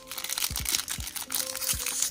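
Crinkling and rustling of Pokémon trading cards and their foil packaging being handled, with soft background music and a few dull taps.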